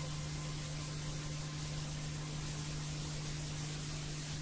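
Steady hiss with a continuous low electrical hum and no programme sound: the noise floor of an analogue VHS recording of a TV broadcast.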